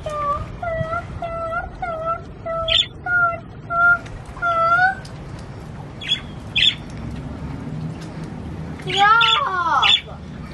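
Pet budgerigars calling: a short call repeated about two to three times a second, with brief higher chirps among it, stopping about five seconds in. A voice is heard briefly near the end.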